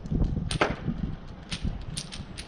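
A thrown domino hitting a wall: a sharp click about half a second in, then a few lighter ticks as it comes to rest.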